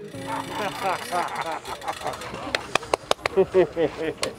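Several excited voices talking and calling out over one another, with a run of sharp clicks in the second half.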